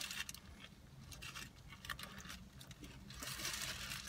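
Faint chewing of a bite of burrito filled with crunchy tortilla chips, with scattered soft crunches, clicks and rustles.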